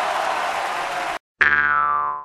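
A steady rushing noise cuts off abruptly just over a second in; then a cartoon 'boing' sound effect rings out, its pitch sliding downward, and fades out within a second.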